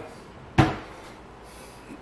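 A single knock about half a second in, a short hard thump that dies away quickly.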